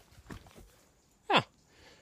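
A man's brief startled 'oh', falling steeply in pitch, about a second in, after a faint short rustle.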